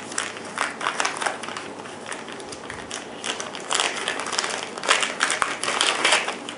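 Clear plastic packaging crinkling and rustling as it is handled, in irregular crackles that grow louder and busier in the second half.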